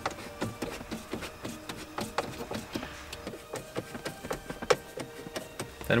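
Hand screwdriver driving the mounting screws back into a car head unit: a run of small, irregular clicks and light scraping.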